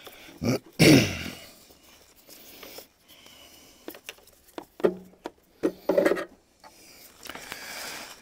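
Hands working in a car engine bay: scattered clicks and knocks of parts and fasteners being handled during a strip-down, with a couple of short vocal sounds, about a second in and about six seconds in.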